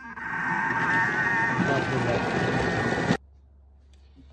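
Bimby (Thermomix) food processor blending cooked fava beans and roasted tomatoes into a thick purée: a motor whine that builds up over the first second, runs steadily, then stops abruptly about three seconds in.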